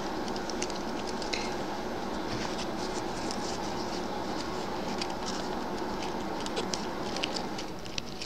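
Light scratching and ticking of thin floral wire and crocheted yarn being bent and twisted by hand, many small irregular ticks over a steady background hum.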